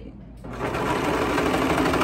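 Serger (overlock machine) starts about half a second in and runs fast and steady, stitching the side seam while its blade trims the fabric edge.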